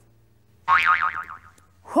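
A cartoon "boing" comedy sound effect: a springy, wobbling twang lasting under a second. It starts about two-thirds of a second in, after a short quiet gap, and fades out.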